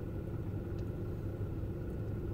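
Steady low hum of a parked car running, heard from inside the cabin.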